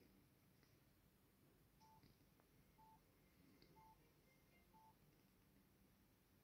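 Near silence, with four faint short electronic beeps at one pitch, about a second apart.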